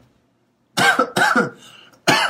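A man coughs twice into his fist: two short coughs, about a second in, in quick succession.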